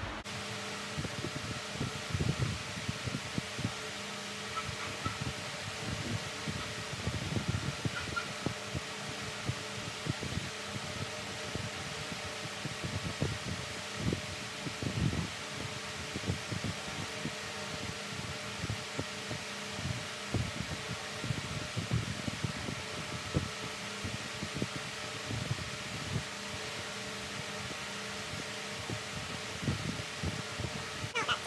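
Electric standing fan running with a steady whir and faint hum, with irregular soft low thumps throughout.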